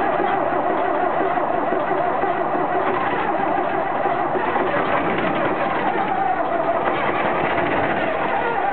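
Willème LB 610 truck's diesel engine running just after being restarted. The engine speed sags a little about five seconds in and picks up again.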